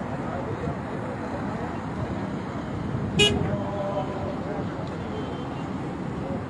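A short car horn toot about three seconds in, over a steady din of traffic and indistinct voices.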